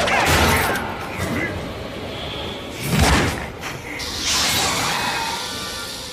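Sci-fi cartoon sound effects over background score: a loud hissing burst at the start, a heavy low thud about three seconds in, and a hissing, voice-like snarl in the last two seconds.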